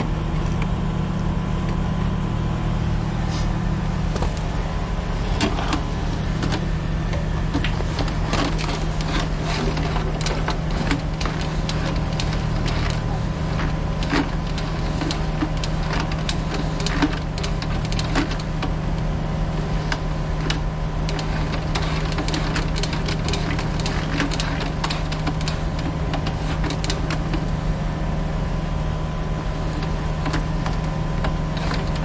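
Steady low drone of a running engine-driven machine, with frequent light clicks and knocks scattered over it.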